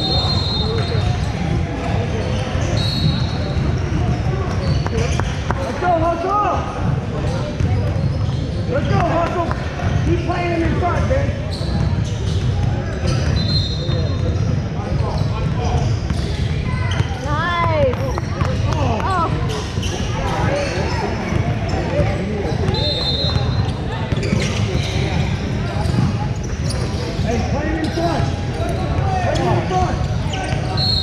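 Basketball game sounds in a large echoing gym: a ball bouncing on the hardwood and players' feet on the court, with a few short high sneaker squeaks and distant shouting voices.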